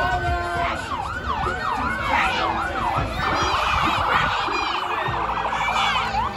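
Electronic emergency-vehicle siren in a yelp, about three wails a second, switching about three seconds in to a much faster warble.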